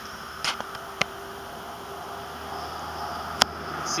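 Quiet steady background hiss with three brief sharp clicks, about half a second in, a second in, and near the end.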